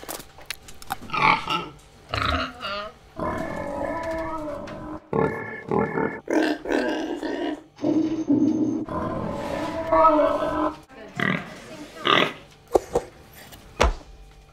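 Pig grunts and oinks in a run of about a dozen bursts, some short and clipped, others drawn out over a second or more, dubbed in place of the sound of noodle slurping.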